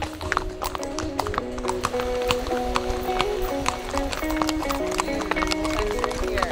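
Horses' hooves clip-clopping at a walk on a paved road, about three or four hoofbeats a second, under background music with held notes.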